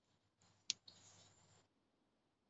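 A sharp click, then a softer second click, inside about a second of rustling or scraping noise.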